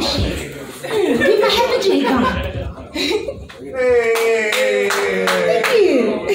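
A woman's voice through a microphone, vocalising without clear words, with a long held note about four seconds in. A few sharp claps cut through.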